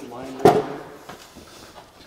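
A single sharp knock about half a second in, with a man's voice briefly around it.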